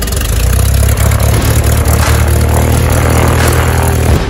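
Light aircraft's piston engine running loud and close, a steady low drone with noise over it.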